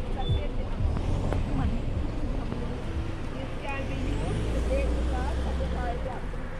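Car engine rumble with road traffic going by; the low rumble grows louder over the second half as a vehicle approaches. Faint voices talk over it.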